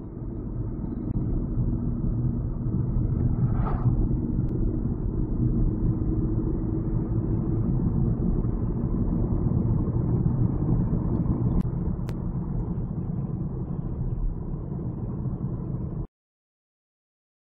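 Road and engine noise inside a moving car's cabin: a steady low rumble. It fades in at the start and cuts off abruptly at the end.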